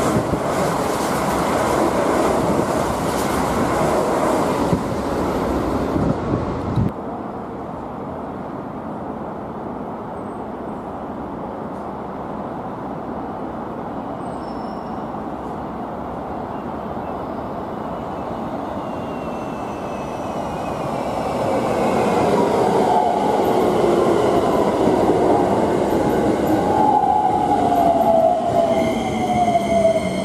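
Keikyu electric trains running: a Keikyu 2100-series train running close by until the sound cuts off abruptly about seven seconds in. After a stretch of quieter background, a Keikyu New 1000-series train grows louder from about twenty seconds in and runs past, with whining tones that fall in pitch as it goes by.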